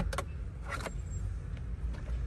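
Low, steady rumble of a car cabin with the engine running, with two light clicks at the start and a brief rustle a little under a second in.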